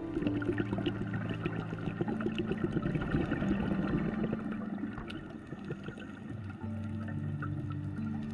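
Underwater sound picked up by the camera: a dense, irregular crackle of many small clicks with water noise, under soft background music with held notes.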